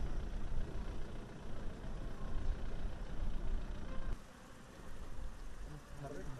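Low, steady rumble of a vehicle engine, a bus or similar heavy vehicle, heard in open-air road ambience. The sound changes abruptly and drops in level about four seconds in.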